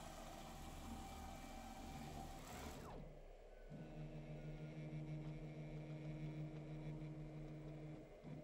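CNC router gantry jogging along its X axis, driven by Nema 34 stepper motors through planetary gearboxes: a faint whirr that runs steadily, then winds down and stops a little under three seconds in. A steady low hum of the machine follows for the rest.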